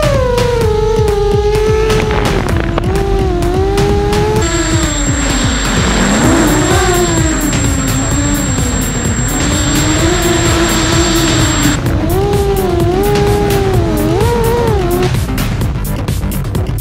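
Racing quadcopter's electric motors whining, the pitch rising and falling unevenly with the throttle, over electronic music with a steady beat. A thin, steady high tone sounds through the middle few seconds.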